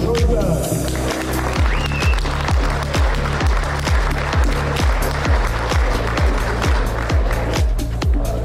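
Background dance music with a steady kick drum, about two beats a second.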